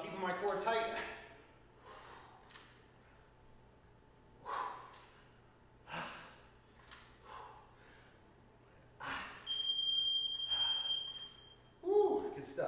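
A man breathing hard with forceful exhales while doing dumbbell clean-and-press reps. About nine and a half seconds in, a single high electronic beep sounds for about two seconds: an interval timer marking the end of the 30-second work set.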